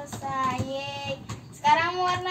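A young girl's voice singing, two drawn-out sung phrases with a short gap between them.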